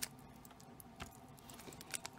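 Faint handling sounds of a small plastic packet and a lump of Play-Doh: a few soft clicks and crinkles, one about a second in.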